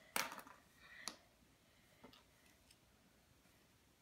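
A few light clicks and taps of small plastic pen parts being handled and set down on a hardwood floor, mostly in the first second or two, then near silence.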